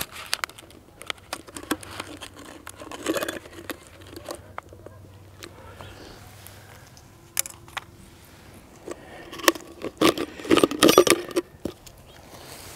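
Portable antenna kit being handled and unpacked from its bottle: scattered clicks, clinks and rattles of small hard parts. There is a brief flurry about three seconds in and a busier run of clinking near the end.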